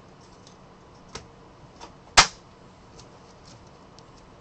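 Trading cards handled over a table: a few sharp taps and clicks, the loudest about two seconds in, as cards are set down or knocked against the tabletop.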